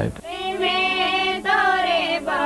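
A group of girls singing together in high voices, starting about a quarter-second in as a man's last word ends.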